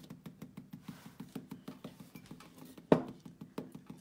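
Rapid light tapping of a marker against a rubber stamp on a clear acrylic block, several taps a second, as ink is dabbed onto the stamp. One sharper, louder click about three seconds in.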